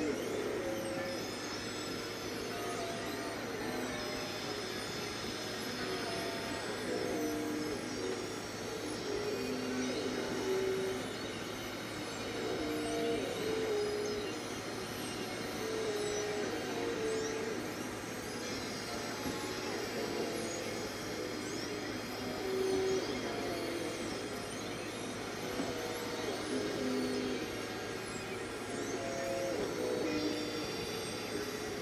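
Electronic keyboard played slowly with one hand: single held notes, one after another with occasional pairs, over a steady background hiss.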